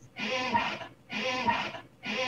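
Short animal-like calls, each just under a second long, repeating about once a second with the same shape each time.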